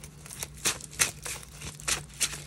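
A gold-edged tarot deck being shuffled by hand: a quick, irregular run of card slaps and flicks, about half a dozen in two seconds.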